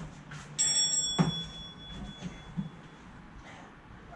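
A bright bell-like chime that starts about half a second in and rings out, fading over a second or two. A short thud about a second in, as the exerciser drops onto the mat while switching sides, is the loudest sound.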